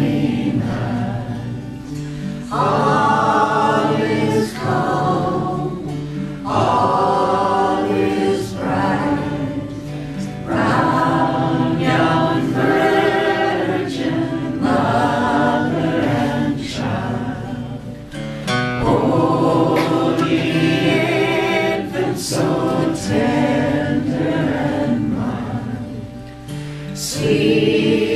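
A man and a woman singing a folk song together, accompanied by two acoustic guitars, in sung phrases of a few seconds each.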